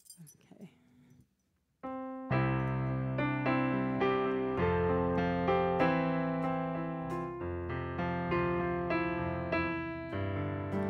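Electronic keyboard playing a piano-sound intro to a worship song: sustained chords over low bass notes, changing about once a second. It starts about two seconds in, after a short silence.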